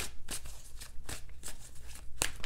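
A deck of tarot cards being shuffled by hand: a run of soft, irregular card-on-card strokes, a few a second.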